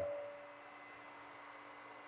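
Quiet room tone during a pause in speech: a faint steady hum and hiss, with the tail of a man's voice fading away at the start.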